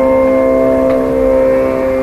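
Electric mandolins in a Carnatic performance holding long, steady sustained notes, with a lower note joining at the start.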